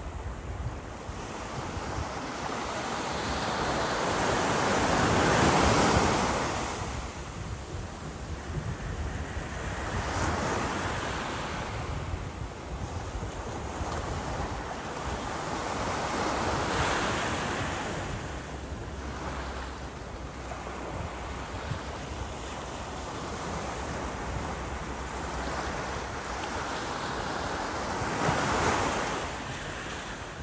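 Small surf breaking and washing up a sandy beach, rising and falling with each wave: the biggest surge about five to six seconds in, others around ten and seventeen seconds, and another near the end. Wind rumbles on the microphone underneath.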